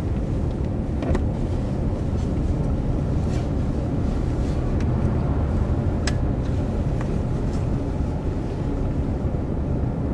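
Steady low rumble of a car on the move, heard from inside the cabin: road and engine noise, with a few faint clicks about a second in and again around six seconds.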